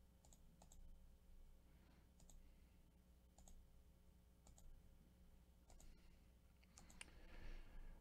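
Faint computer mouse button clicks, a few short ticks spaced about a second apart, over near-silent room tone with a low steady hum.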